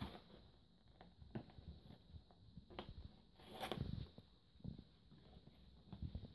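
Hands handling a small cardboard parcel: faint scraping of fingers on the cardboard and its packing tape, with a few sharp clicks spaced a second or so apart.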